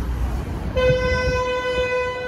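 A vehicle horn sounding one long steady note, starting about a second in and held for nearly two seconds, over the low rumble of city traffic.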